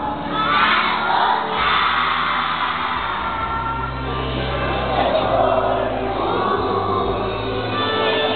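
A group of young children singing a song together over musical accompaniment, many voices at once with a bass line held under them.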